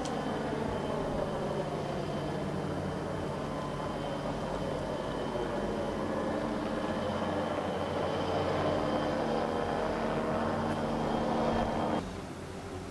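A helicopter flying off over the river: a steady engine drone with a faint high turbine whine over a rushing haze.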